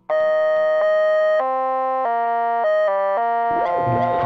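Instrumental music starting from silence: a synthesizer plays a series of held chords that change every half second or so. About three and a half seconds in, a fuller backing joins.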